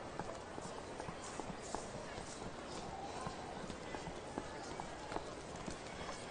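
Faint street ambience: a steady hiss with scattered light clicking steps on hard pavement.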